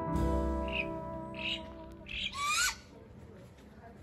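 Sustained notes of background music fading away over the first two seconds, overlapped by a bird calling: a few short shrill calls, the last and loudest a rising squawk about two and a half seconds in.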